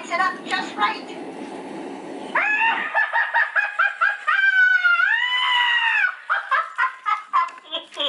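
Animatronic witch's recorded voice track letting out a shrill, high-pitched cackle: fast pulsing cackles from about two and a half seconds in, then a long drawn-out note that rises and falls, then a few more short cackles. A low rushing noise runs under the first couple of seconds.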